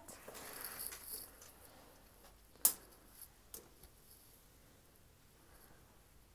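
Sheer curtain fabric rustling as it is handled and pushed aside, then one sharp click a little over two and a half seconds in and a few lighter taps, followed by quiet room tone.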